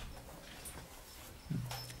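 A pause in a man's talk: faint room tone, with a short low voiced sound from him, a hum or breath, about one and a half seconds in.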